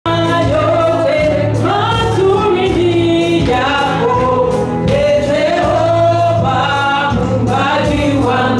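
Gospel music: voices singing a song over a steady instrumental accompaniment, starting abruptly.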